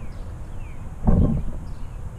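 Wind and handling noise on the FPV quadcopter's onboard camera microphone while the landed drone is held by hand. There is a louder short low rumble about a second in.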